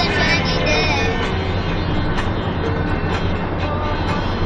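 A boy singing in snatches of held, wavering notes, over the steady low rumble of a moving van's engine and tyres inside its cabin.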